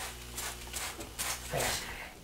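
Several short hissing spritzes from a trigger spray bottle of cleaner, the longest near the end, over a faint low hum.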